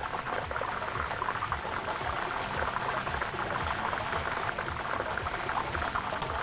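Lottery draw machine running to pick the next ball: a steady, dense rattle of many plastic balls knocking against each other and the clear drum as they tumble.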